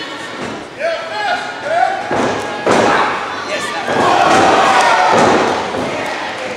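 Wrestlers' bodies hitting the ring mat: a couple of heavy thuds on the ring's boards about two to three seconds in. People are shouting in the hall.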